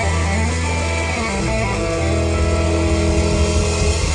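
Live blues-rock band playing, guitar to the fore over long held low bass notes.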